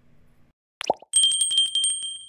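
Subscribe-button animation sound effects: a click and a short rising pop about a second in, then a small bell trilling rapidly and ringing out.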